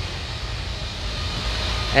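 Steady low rumble with a hiss over it: the noise of construction work still under way, which is described as a bit noisy.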